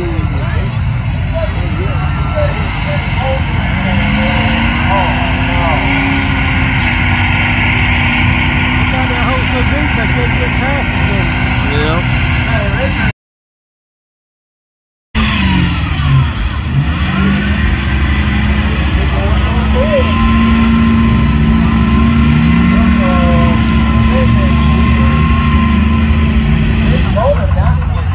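Diesel engine of a vehicle in a mud pit, revving hard under load: the pitch climbs and then holds. The sound cuts out completely for about two seconds in the middle, then an engine revs again, its pitch rising and falling repeatedly.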